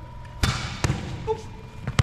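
Sharp thumps echoing through a large gym: a leather football striking and bouncing on the hardwood court after a dropped catch. Two loud hits come about half a second apart early on, and a fainter one near the end.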